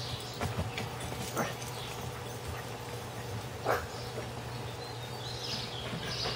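A dog gives a few short, sharp barks spread through the stretch, the loudest a little past the middle.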